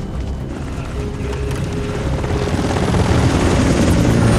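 Helicopter rotors chopping and growing louder toward the end, over a tense music score.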